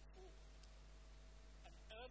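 Near silence: room tone with a steady faint electrical hum, a brief faint voiced sound a moment in, and a man's speech starting right at the end.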